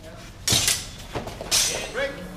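Training swords clashing and striking during a fencing exchange: two loud, sharp hits about half a second and a second and a half in, with a smaller knock between them.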